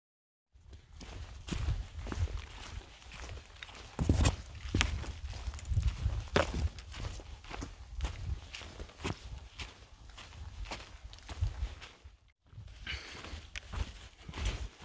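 A hiker's footsteps on a trail covered in fallen leaves, irregular crunching steps over a low rumble. It starts after a brief silence and drops out briefly near the end.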